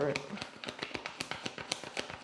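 A deck of tarot cards being shuffled by hand: a rapid, uneven run of light card taps and clicks.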